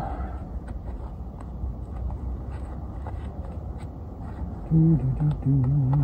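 Faint plastic clicks and handling as a battery pack is fitted into a handheld mini electric chainsaw, over a steady low rumble. From about five seconds in, a man hums a few stepped notes.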